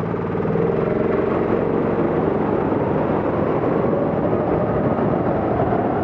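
Go-kart's small petrol engine pulling under throttle, heard from the driver's seat. Its pitch climbs steadily over the second half as the kart gathers speed.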